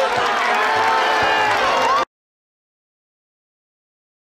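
Football crowd cheering and shouting, many voices at once with some long held calls, cutting off suddenly about two seconds in.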